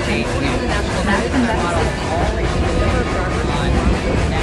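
Several soundtracks playing over one another: overlapping voices mixed with a steady low rumble of moving vehicles, none of it clearly separable.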